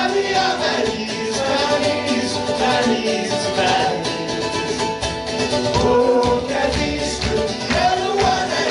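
Live folk-rock band playing a song: strummed acoustic and electric guitars and a drum kit under several voices singing together, with the drums hitting harder in the second half.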